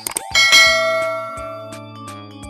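Bell 'ding' sound effect for a subscribe-bell click: a short click, then one bell strike about a third of a second in that rings and slowly fades. Background music with a steady beat plays underneath.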